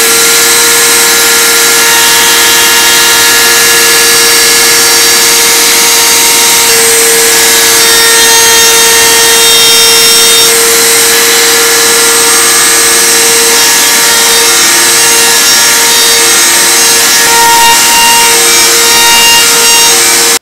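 Table-mounted wood router running at full speed with a loud, steady high whine. A 1/8-inch round-over bit is rounding over the edges of small wooden rails.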